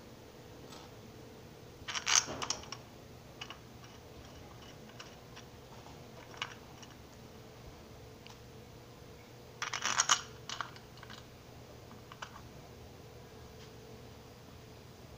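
Two short bursts of clicking and rattling, about two and ten seconds in, with a few single ticks between: small metal parts being handled on a bicycle engine kit's clutch housing. A faint steady hum sits underneath.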